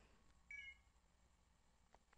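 Near silence: room tone, with one short, faint beep about half a second in.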